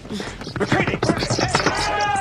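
Film sound effects: a fast run of sharp clattering and crackling knocks, and a steady shrill tone with overtones that comes in near the end.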